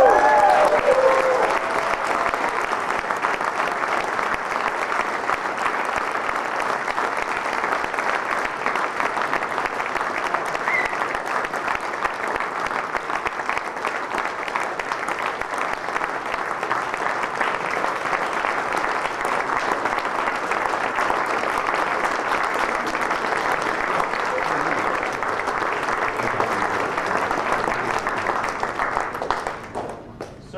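Audience applauding steadily for about half a minute at the unveiling of a painting; it cuts off suddenly near the end.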